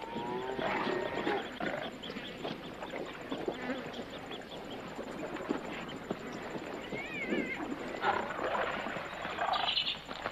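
Animal calls during a lion's attack on a hippo calf, over the noise of the scuffle. There are pitched cries near the start and a wavering call about seven seconds in.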